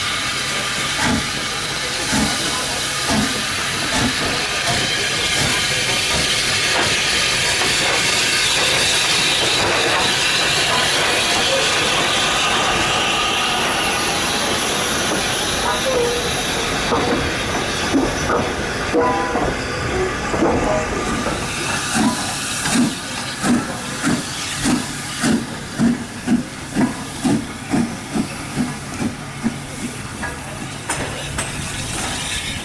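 GNR(I) V class 4-4-0 steam locomotive No.85 Merlin, a three-cylinder compound, working along the line with a steady hiss of steam and slow exhaust beats, rising to a broad swell of noise as it passes close. Near the end come sharp, regular exhaust chuffs about two a second.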